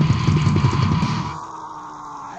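Death metal band playing distorted guitars and drums at full tilt until about a second and a half in, when the drums and low end stop dead. A single held, distorted note rings on as the song ends.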